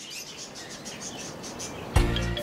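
Birdsong ambience: small birds chirping repeatedly, high and quick, over a soft outdoor hiss.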